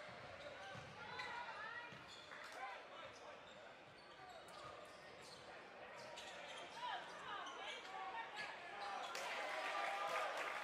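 A basketball bouncing on a hardwood gym floor during live play, with scattered voices of players and spectators.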